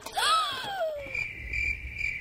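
A whistle-like tone that glides downward, then crickets chirping steadily from about a second in: the comic 'awkward silence' cricket sound effect.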